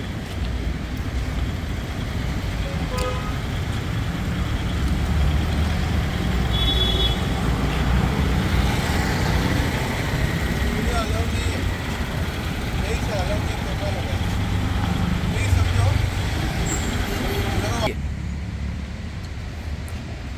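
Steady street traffic rumble with a brief vehicle horn toot about seven seconds in and faint voices in the background.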